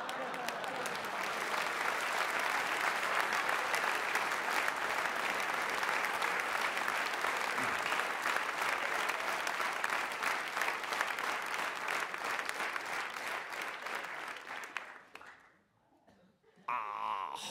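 Theatre audience applauding: a long round of dense clapping that dies away about fifteen seconds in.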